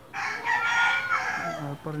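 A rooster crowing once, a single harsh call lasting just over a second.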